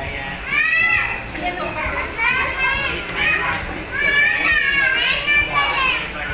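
A young child's very high-pitched voice squealing in a string of short cries, about six in a row, with the pitch bending up and down.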